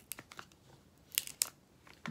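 Paper backing being rolled off adhesive transfer tape laid over cut vinyl letters: soft crinkling with a few sharp crackles, the loudest two a little over a second in.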